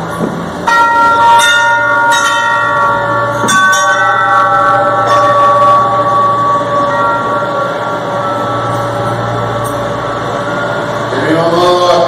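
A bell struck three times, about a second and a half apart, each stroke ringing on in long, slowly fading tones. A voice starts near the end.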